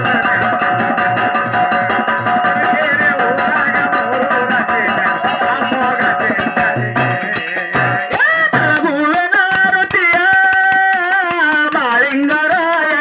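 Live folk devotional music: regular drum strokes under steady sustained tones for the first eight seconds or so, then a solo voice singing a melody with long held notes to the end.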